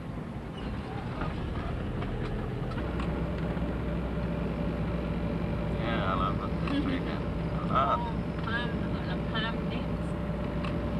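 Engine and road noise inside a moving car, a steady hum, with a steady tone joining about three seconds in.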